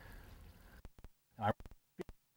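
A brief snatch of a man's voice about one and a half seconds in, over faint background hiss that drops out to silence about a second in, broken by a few short clicks.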